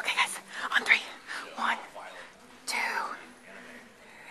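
Soft whispered and murmured speech, in short fragments with brief breathy hisses between.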